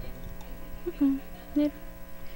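Steady low electrical hum with a buzzy edge, with two short vocal sounds about one and one and a half seconds in.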